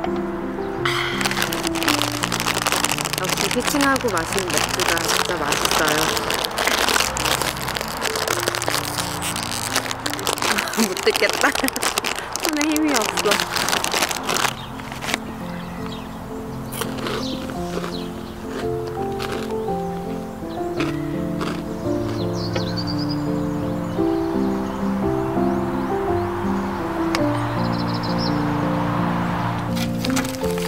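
Plastic snack bag crinkling and rustling in the hands for the first half, thinning to scattered crackles and clicks. Soft background music with held notes plays throughout.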